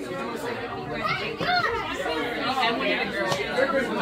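Several people talking at once in a room: overlapping party chatter.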